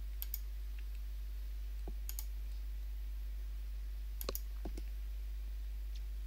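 Computer mouse clicking: three quick pairs of clicks about two seconds apart, with a couple of fainter ticks, over a steady low electrical hum.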